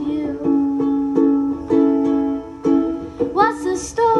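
Small acoustic stringed instrument strummed in steady chords, each strum ringing on into the next.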